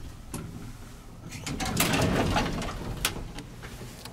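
Otis Autotronic elevator doors sliding open on arrival: a click, then a rattling slide that swells and fades, ending in a sharp clunk about three seconds in.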